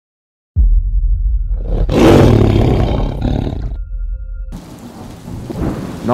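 A sudden deep rumble of thunder breaks in about half a second in, swells to its loudest about two seconds in and rolls away. Near the end it gives way to the steady hiss of rain.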